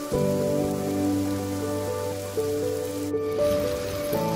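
Steady rain sound over slow music of held, changing notes; the rain cuts off suddenly about three seconds in, leaving the music.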